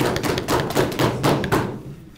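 Audience applauding by rapping on desks: a dense patter of knocks that dies away near the end.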